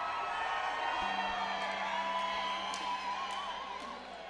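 Concert crowd cheering and whooping between songs, many voices overlapping. A steady low hum comes in about a second in.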